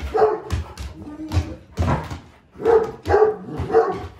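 A Great Pyrenees barking during play: a run of about six short, deep barks.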